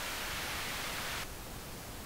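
Pink noise from a signal generator played through a bass/mid/treble equalizer plug-in with its mid-range boosted. About a second in, the boost is turned back to flat and the hiss loses some of its brightness.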